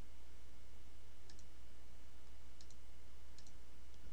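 A few faint, scattered computer mouse clicks over a steady low hum and hiss.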